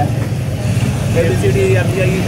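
Steady low rumble of street traffic, with people talking over it from about a second in.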